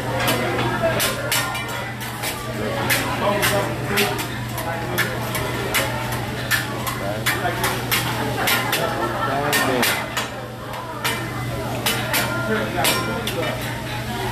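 Hibachi chef's metal spatula and fork clicking, tapping and scraping on a steel teppanyaki griddle in quick, irregular strokes.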